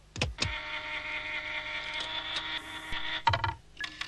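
Animation sound effect of a jukebox mechanism whirring: two quick downward swoops, then a steady mechanical whir with several pitches held together for about three seconds, ending in a couple of low thuds.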